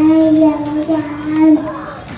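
A young girl singing into a handheld microphone, holding one steady note for about a second and a half before her voice falls away near the end.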